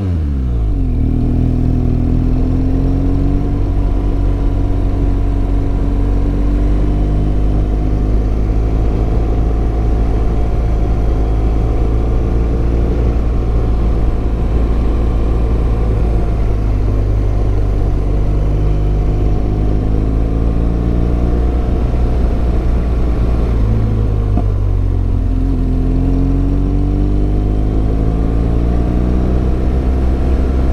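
Motorcycle engine running under way. Its pitch climbs as it accelerates, from about a second in and again about 24 seconds in, over a heavy low wind rumble on the camera microphone.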